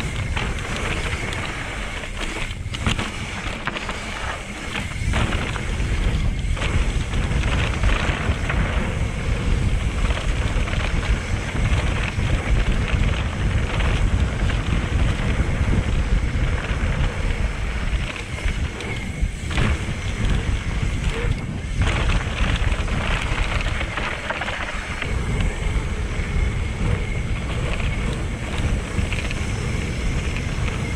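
Mountain bike ridden fast down dirt singletrack: steady wind rush on the action-camera microphone with tyres rolling on dirt and the bike rattling, dropping out briefly a few times.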